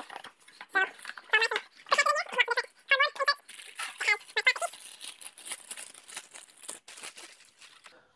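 A few indistinct voice sounds in the first half, then plastic bag crinkling and cardboard packaging rustling for about three seconds as a shotgun is unwrapped and lifted out of its shipping box.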